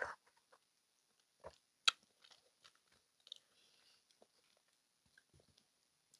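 Quiet mouth sounds of eating passion fruit pulp: a few sparse wet clicks and soft crunches, the sharpest just under two seconds in, with near silence between them.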